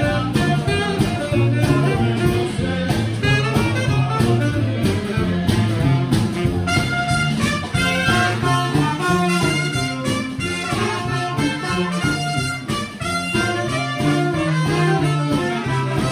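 New Orleans-style brass band playing live: trumpet, trombone, saxophone, sousaphone and drums. The horns come in bright and full about six and a half seconds in.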